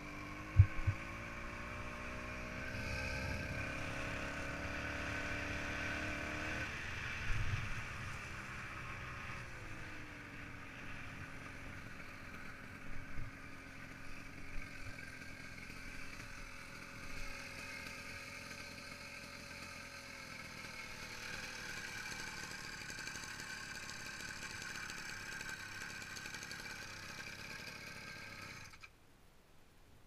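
Small two-stroke engine on a motorized bicycle running. Its pitch climbs steadily for about six seconds, drops sharply, then eases down to a slower steady run, with a few short thumps along the way, before it cuts off near the end.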